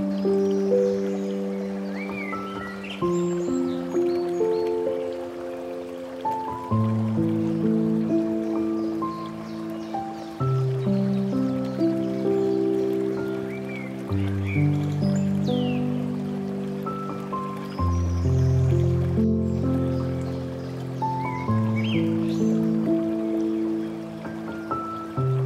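Slow, gentle solo piano music, with notes and chords held and left to ring, changing every second or two. Short bird chirps are mixed in a few times, over a soft bed of running water.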